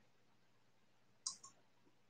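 Near silence with two faint short clicks a little past halfway, a fraction of a second apart.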